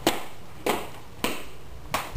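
Four sharp taps in an even rhythm, a little over half a second apart, each ringing off briefly.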